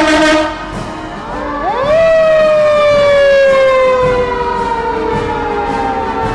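Fire truck siren winding up quickly about a second and a half in, then slowly winding down. It is preceded by a brief loud blast at the start.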